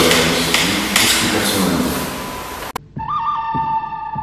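Men talking indistinctly over a steady hiss, cut off abruptly about three seconds in. Calm background music with long held notes follows.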